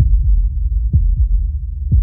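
Trailer sound design: a deep heartbeat pulse, a double thump about once a second, over a loud low drone.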